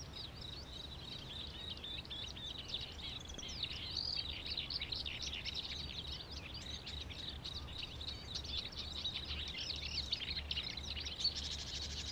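Many birds chirping rapidly and continuously in a dense chorus, over a steady high-pitched tone and a low hum.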